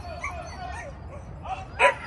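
A dog barks during an agility run: a short, softer sound about a second and a half in, then one loud, sharp bark near the end.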